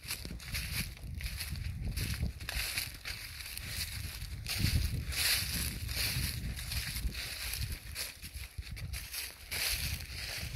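Footsteps crunching and rustling through dry fallen leaves, an uneven step every half second to a second, with a low rumble underneath.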